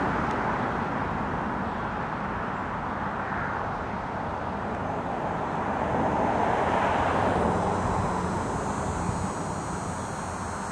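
Steady rushing noise of distant motor vehicles, swelling to its loudest about six to seven seconds in and then easing off.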